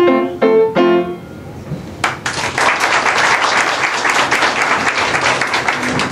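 Grand piano sounding its final chords, which ring and fade over the first second or so. From about two seconds in, an audience applauds steadily to the end.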